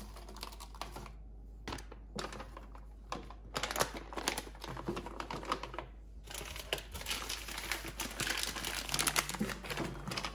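Plastic food bags crinkling and rustling as they are handled and set into clear plastic freezer-door bins, with light clicks and taps of the bags and hands against the plastic. The handling comes in bursts with short pauses.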